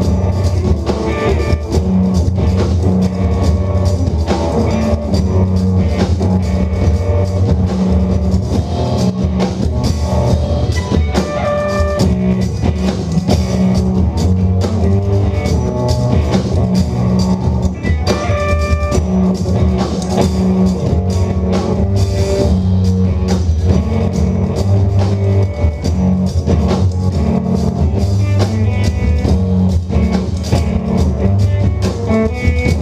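Live rock from an electric guitar and a full drum kit playing together, loud and continuous.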